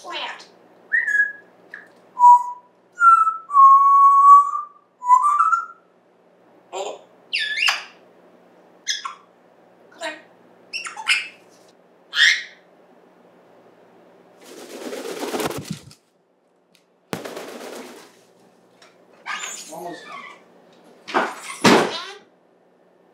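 African grey parrot whistling a few gliding notes, then giving a string of short clicks and squawky calls. Two longer hissy bursts come in the middle, and a louder call comes near the end.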